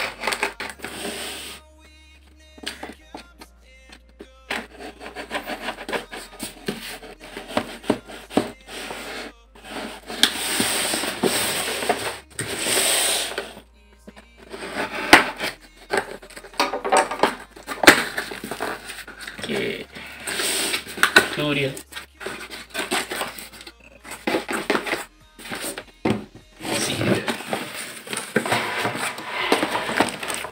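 Packing tape on a cardboard box being slit with a knife and then scissors, with scraping and rustling of the cardboard in irregular bursts as the flaps are worked open.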